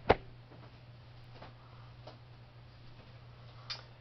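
A sharp knock as the camera is handled, right at the start, then quiet room tone with a steady low hum and a few faint ticks.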